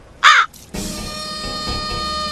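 A single loud crow caw, short and wavering, a quarter second in. About three quarters of a second in, background music with long held notes starts and carries on.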